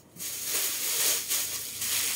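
A bag being handled: a steady rustling hiss that starts a moment in.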